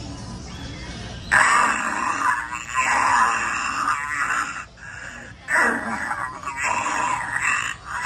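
Halloween animatronic of a ghoulish old woman triggered into its sound effect: a loud, harsh, raspy voice starts about a second in and runs in long stretches with short breaks.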